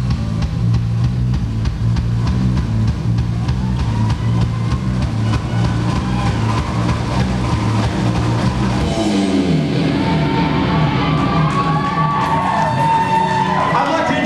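Live rock band with a full drum kit, electric guitar and bass playing loudly. About nine seconds in the drums drop out and the song winds down into sliding, held tones, with cheering from the crowd rising near the end.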